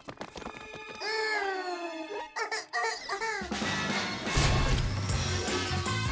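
Cartoon action music with sound effects: a falling pitched tone about a second in, then a deep low rumble that swells from about halfway and runs under the music.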